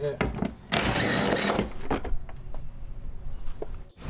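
Cordless power driver with a socket running in a loud burst about a second in, backing out one of the 13 mm bolts that hold the tailgate's spare-tire bracket, followed by shorter, choppier runs and rattles.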